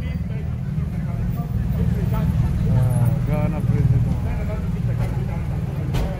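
Street noise: a heavy, steady low rumble with distant voices calling out, loudest around the middle.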